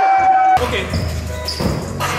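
A held musical note that cuts off abruptly about half a second in, followed by a low steady hall hum and a few basketball bounces on the gym floor.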